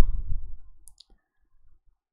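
A low thump at the start, then two short computer mouse clicks about a second in.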